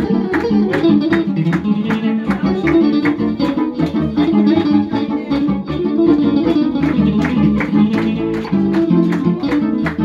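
Electric guitar and electronic keyboard playing a tune live together over a steady percussive beat.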